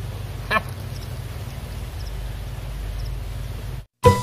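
Steady low outdoor rumble from the streamside recording, with one short, sharp call about half a second in. The sound cuts off suddenly just before the end.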